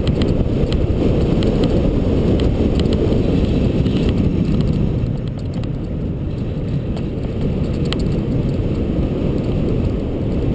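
Riding noise on a bicycle-mounted action camera: wind on the microphone and tyres rumbling on asphalt, with scattered sharp clicks from bumps in the road. It eases slightly about five seconds in.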